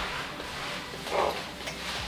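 Footsteps and handling noise as a sandbag weight is carried over and set down on a light stand's base, with a brief louder rustle about a second in.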